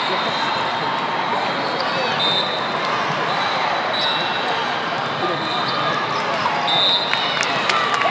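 Busy hall of many voices at a volleyball tournament, with sneakers squeaking on the court floor several times and a few sharp ball hits near the end.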